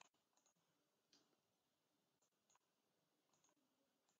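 Near silence, with a few very faint, scattered clicks.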